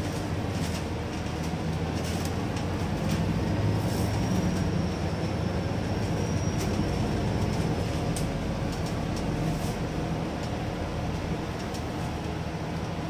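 Double-decker bus running, heard from the upper deck: a steady engine and road rumble that swells a little about four seconds in, with small interior rattles and a faint high whine in the middle stretch.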